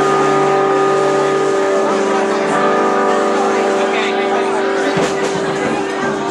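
Live band playing a loud, droning chord of sustained held notes; a low note drops out about a second and a half in.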